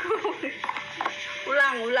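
Voices, with a few short clicks from a cardboard gift box being opened by hand about halfway through.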